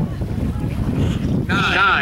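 Low, steady rumble of distant hydroplane racing-boat engines during the warm-up, with wind buffeting the microphone. A voice starts speaking about one and a half seconds in.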